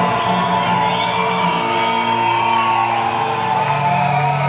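Live rock band playing, with electric guitar lines over long held low bass notes and little drumming.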